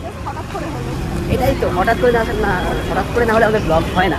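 People talking over a steady low rumble of traffic and crowd noise.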